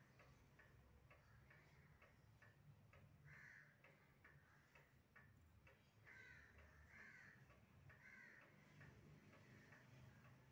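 Near silence: faint, regular ticking, about two ticks a second, with a few faint short calls in the background, four of them in the second half.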